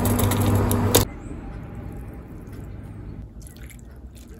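A pot of ramen noodles bubbling at the boil, with a steady hum under it, which cuts off about a second in. Quieter liquid sounds with a few drips follow as broth is ladled.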